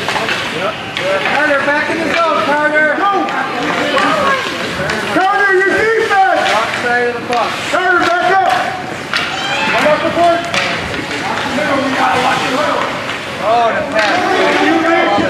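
Several voices calling and shouting over one another, with occasional sharp clacks of hockey sticks and puck on the ice.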